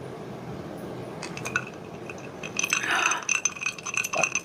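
Ice cubes clinking and rattling in a glass mug of cola as it is drunk from and lowered, the clinks thickest in the second half with a faint ringing from the glass.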